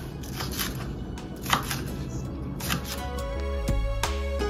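A kitchen knife cutting green onions on a plastic cutting board, a handful of separate sharp taps over the first few seconds. Background music comes in about three seconds in.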